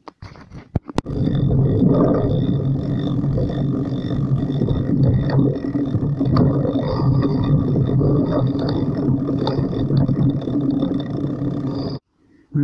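Bicycle riding downhill on a rough dirt trail: a loud, steady rumble of wind on the microphone with the bike rattling and knocking over the ground. It starts about a second in, after a few clicks.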